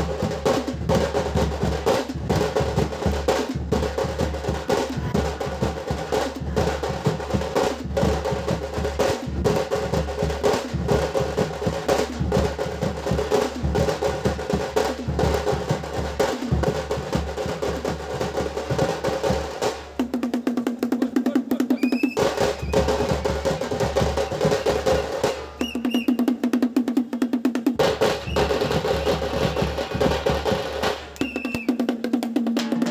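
Street drum band: several large stick-beaten drums playing a fast, dense, driving rhythm. About two-thirds of the way in, and again near the end, the deep booming drops out for a couple of seconds, leaving a rapid roll.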